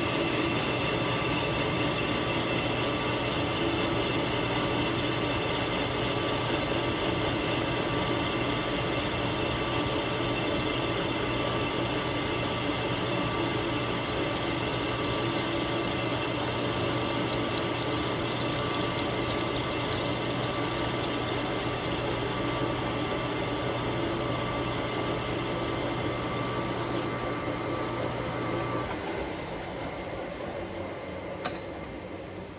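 Metal lathe running with the cross slide on power feed, taking a light facing cut across the end of a metal bushing with a triangular carbide insert: a steady hum and whine over the hiss of the cut. Part of the hum drops away about a second before the end.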